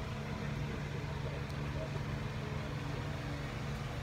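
A steady low hum of a running motor or engine, with faint voices in the background.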